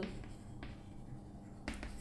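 Chalk writing on a chalkboard: faint scratching with a few sharp taps as the chalk strikes the board.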